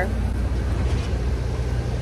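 Steady low rumble of street traffic, cars running by on the road alongside the sidewalk.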